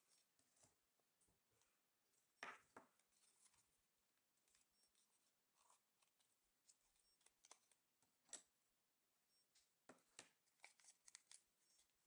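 Very faint crackles and ticks of origami paper being handled and creased between the fingers. A couple of sharper ticks come about two and a half seconds in, another near eight seconds, and a quick run of small crackles near the end.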